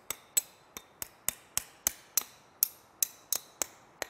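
Hammer tapping a hatchet head to drive it further down its tapered wooden handle: a steady run of light, sharp strikes, about three a second.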